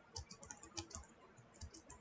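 Faint typing on a computer keyboard: an irregular run of soft key clicks.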